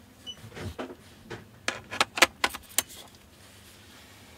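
Fujinon XF8-16mm F2.8 zoom lens and camera body being handled with gloved hands: light rustling, then a quick run of about seven sharp clicks near the middle.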